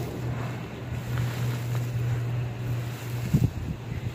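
Lumps of charcoal crumbling and gritty charcoal powder pouring through gloved hands onto a heap, with a couple of louder knocks about three and a half seconds in. A steady low hum runs underneath.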